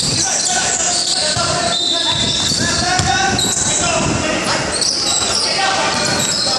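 Indoor basketball game in an echoing gym: sneakers squeaking on the hardwood court, the ball bouncing, and players and spectators shouting.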